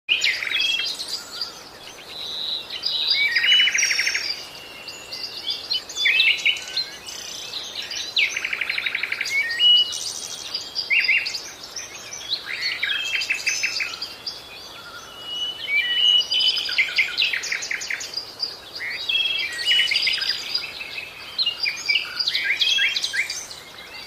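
Birds calling and singing, many short chirps, buzzy trills and high whistles overlapping one another without a break.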